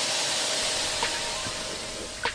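A steady hiss with a thin steady tone under it and a few faint clicks, easing slightly in level toward the end.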